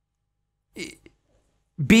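Near silence, broken about three quarters of a second in by one brief, low voiced throat or mouth noise from a man, then his speech starting just before the end.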